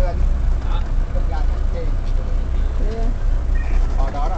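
Steady low rumble of a car heard from inside its cabin, with faint voices in the background.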